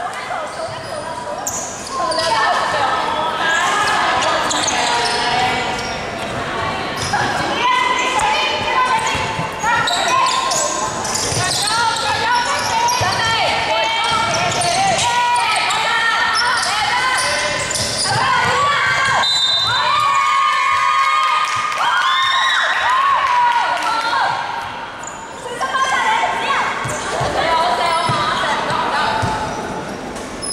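Basketball bouncing on a hardwood court in a large, echoing sports hall, with players' voices calling out across the court throughout.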